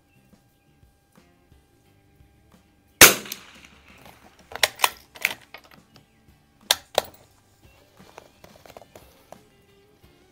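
A single shot from an Anschutz 64 MP bolt-action .22 rimfire rifle about three seconds in, a sharp crack that rings on briefly under the shelter roof. A few seconds later come several quick metallic clicks as the bolt is worked to eject the spent case and chamber the next round.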